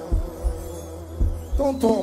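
Live pagodão music with its bass boosted: a steady deep bass drone with three heavy low drum thumps, the singing paused, and a shouted voice coming in near the end.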